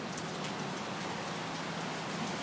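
Steady hiss of outdoor background noise.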